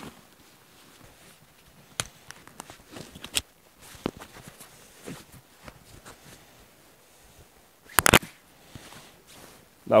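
Hands handling camping gear: light scattered clicks and rustles as small metal-capped canisters are taken from a fabric pouch. A sharp double click comes about eight seconds in.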